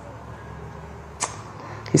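Pause in a man's talk: low steady room hum, broken by a single sharp click a little past a second in, before his voice starts again at the very end.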